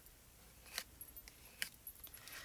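Faint scraping of a plastic palette knife spreading texture paste over a plastic stencil, with a couple of light ticks as the blade catches the stencil edge.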